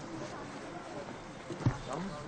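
Footsteps walking through snow, with faint voices in the background and a single dull thump near the end.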